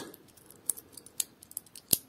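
Heimdallr watch's stainless steel bracelet and double-pusher clasp clicking as it is closed on the wrist: a few light metallic clicks, the loudest near the end as the clasp snaps shut.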